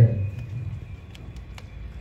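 An amplified announcer's voice ends a word and its echo fades in a large hall, leaving a low steady rumble of room noise with a few faint clicks.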